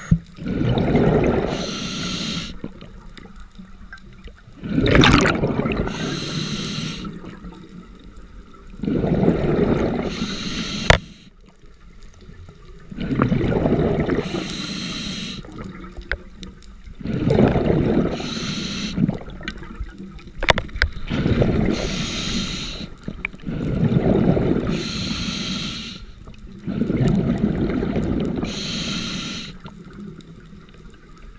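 A diver breathing through a scuba regulator underwater: a rushing burst of exhaled bubbles alternating with a higher regulator hiss, about one breath every four seconds, eight breaths in all. A couple of sharp clicks come through, around five and eleven seconds in.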